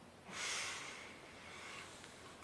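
A person's deep breath through the nose, starting suddenly about a third of a second in and trailing off over about a second.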